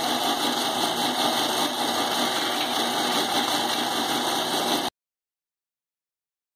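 Powered groundnut (peanut) stripping machine running steadily, its motor and spinning drum making a continuous mechanical noise. The sound cuts off abruptly about five seconds in.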